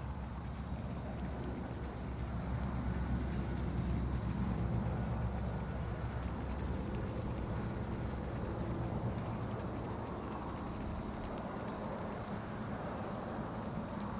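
Low steady rumble with a hum in it, swelling a few seconds in and slowly easing off.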